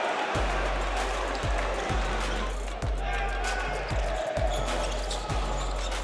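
A basketball dribbled on a hardwood court, thumping about twice a second, with arena music and a crowd hubbub in the background.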